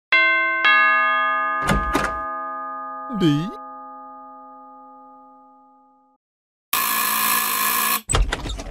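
Doorbell chime, a two-note ding-dong that rings out and fades over several seconds. Two short thumps follow, then a brief voice sound. Near the end comes a loud burst of noise lasting about a second.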